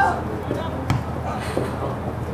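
A single sharp thump of the soccer ball being struck, about a second in, over shouting voices from the field and sidelines.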